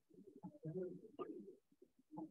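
Faint, muffled, indistinct voices of people chatting.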